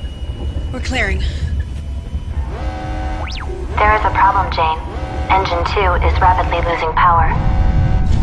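Deep, steady rumble of a spaceship's engines during liftoff, with a film score of held tones coming in about a third of the way through.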